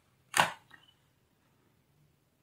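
A single sharp click, followed straight after by a fainter small click.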